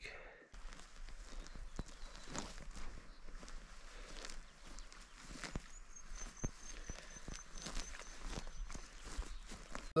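Footsteps through grass and low scrub on a slope: an uneven run of soft steps and brushing as someone walks down the hillside.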